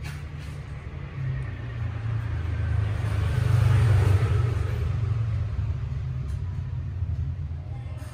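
Low rumble of a passing road vehicle, swelling to its loudest about halfway through and then fading.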